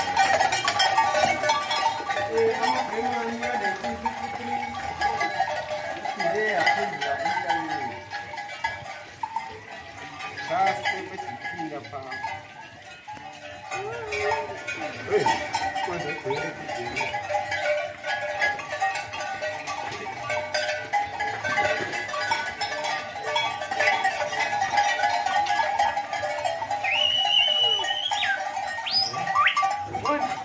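Cattle being crowded through a plunge dip race, with indistinct voices calling over a steady high tone that runs throughout. A few sharp rising whistles come near the end.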